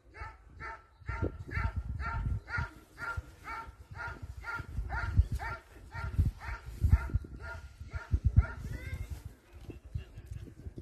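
A working dog barking in a steady, rapid series, about two to three barks a second, at the padded-sleeve helper it is guarding in a protection exercise, stopping about nine seconds in. Low wind buffeting on the microphone runs underneath.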